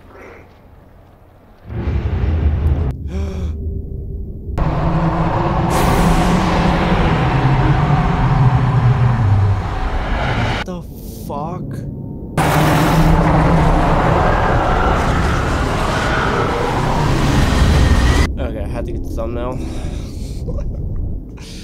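A TV drama's soundtrack playing loudly: deep rumbling and booming effects under tense music, with some voices, broken by abrupt cuts a few times.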